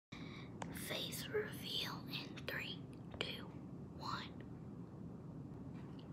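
A girl whispering a few words close to the microphone, with a few light clicks mixed in. The whispering stops about four seconds in.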